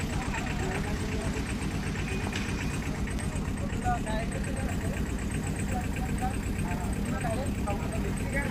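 An engine idling steadily, with a fast, even ticking running over it; faint voices talk now and then in the background.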